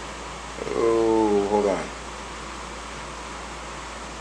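A man's voice giving one drawn-out, wordless 'uhhh' lasting about a second, its pitch sinking slightly at the end, over a steady low room hum.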